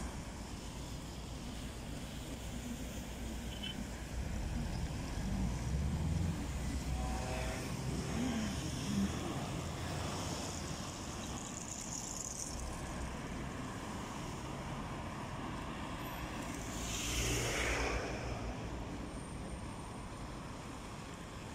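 Road traffic: cars driving past on a city street as a steady rumble, with one car passing close and louder near the end.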